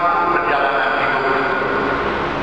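A man's voice through a microphone and PA, drawn out into long, held, chant-like tones over the first second or so, then carrying on more quietly.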